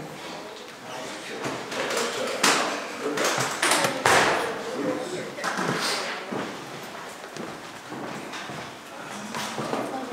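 Clunks and knocks of a microphone stand being handled and adjusted, with people talking quietly in the room.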